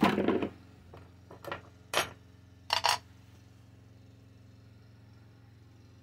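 Small scrap-metal parts handled on a workbench. There is a clatter at the start, then a few sharp clicks and a clink over the next three seconds as the copper wire is lifted off a plastic kitchen scale and a small aluminium casting is set down on it. After that only a faint steady hum remains.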